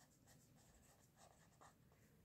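Near silence, with a few very faint strokes of a pen writing on paper.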